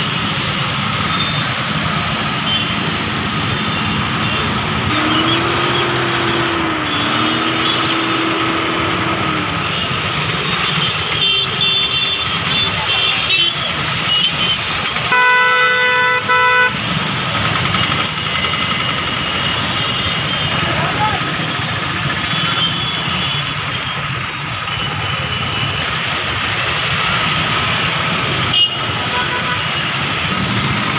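Busy street traffic: motorbikes and auto-rickshaws running, with vehicle horns honking now and then. A loud horn blast about halfway through lasts about a second and a half.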